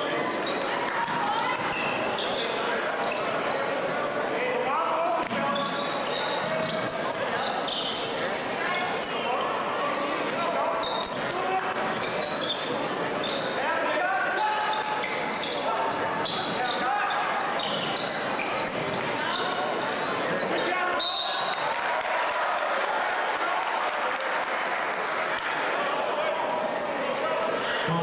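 Basketball game sounds in a large, echoing gym: steady crowd chatter, a basketball bouncing on the hardwood floor and short sneaker squeaks, with a brief high referee's whistle near the end.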